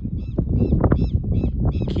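A small bird calling in a quick series of short, repeated chirps, a few a second, over a steady low rumble.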